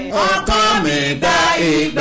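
Voices chanting in long, gliding sung phrases, in a prayerful worship style, broken by brief pauses about half a second and just over a second in.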